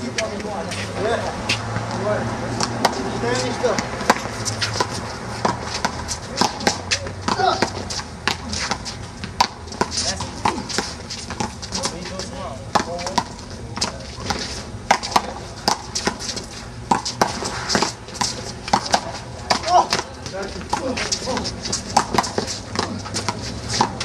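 A small rubber handball being hit by hand and smacking off the wall during a rally, with many sharp, irregular smacks. Voices can be heard in the background.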